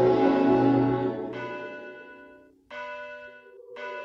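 Soundtrack music: a held chord fades away over the first two seconds, then three struck, bell-like notes ring out one after another, each dying away.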